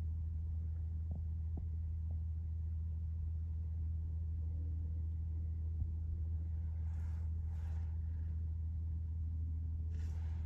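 A steady low mechanical rumble, with a few faint clicks about a second in and short rustling hisses near the end.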